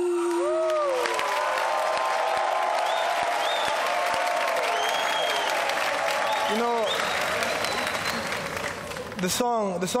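Studio audience applauding with scattered cheers after a sung ballad's last held note ends about a second in. The clapping thins out near the end as a man starts to speak.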